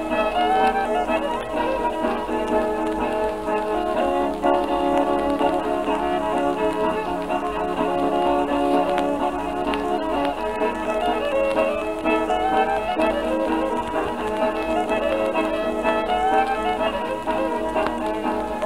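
Old-time string band with fiddle lead playing an instrumental passage of a fiddle tune, from a 1926 78 rpm shellac record. It has a thin, narrow-band sound, with faint surface hiss and crackle underneath.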